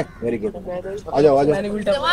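Voices talking in short stretches, with a pause in between.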